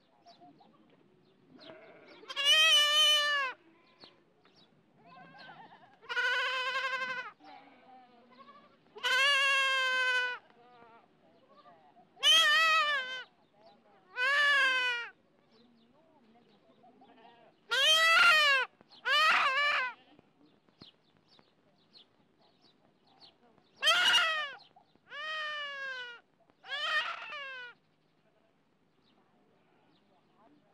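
A young goat (kid) bleating loudly in distress about ten times, each call about a second long and a few seconds apart, while it is held down on the ground for castration.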